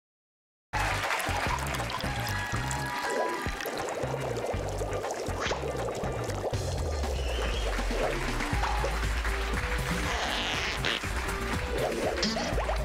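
Silence for under a second, then a TV comedy show's opening theme music starts suddenly, with a strong, moving bass line.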